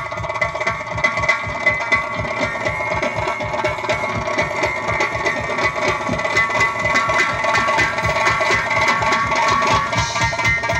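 Several Uzbek doira frame drums played together in a fast, dense rhythm, over held melodic tones.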